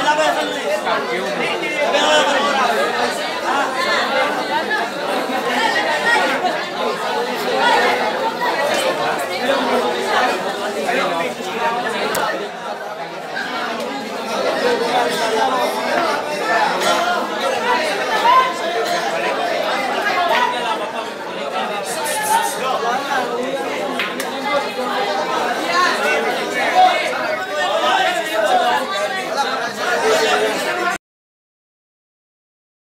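Crowd of spectators chattering, many voices talking over one another at once.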